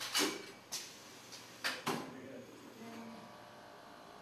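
A few sharp knocks and clatters as an FRC competition robot's deployment mechanism releases its minibot onto the scoring pole for it to climb, followed by a faint steady whine.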